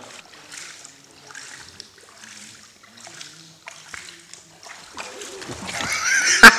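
Faint, distant voices with light rustling. A hissing rush of noise builds near the end.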